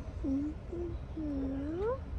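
A toddler's soft wordless vocal sounds: two short hums, then a longer one that dips and then rises in pitch, like a questioning "hmm?".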